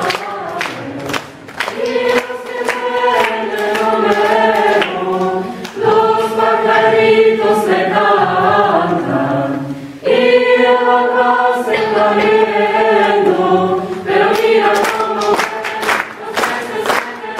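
A school choir singing in several voices in phrases, with brief breaths between them about six and ten seconds in. Rhythmic handclaps keep time at the start and again near the end.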